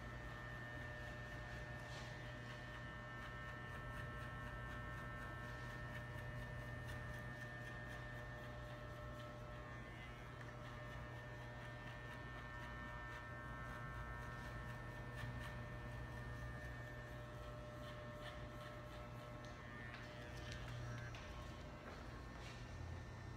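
Corded electric hair clippers running with a steady hum as they cut a man's hair.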